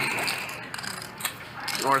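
Clay poker chips clicking against one another as a player handles his stack, a quick run of small clicks that fades near the end.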